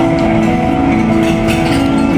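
A small live band playing amplified music, loud, with steady held notes.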